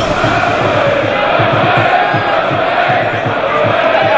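A crowd chanting in unison over a steady low beat, about three beats a second.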